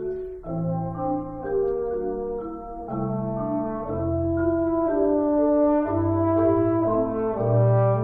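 French horn and marimba playing a slow classical duet, the horn carrying a smooth, sustained melody over low notes from the marimba.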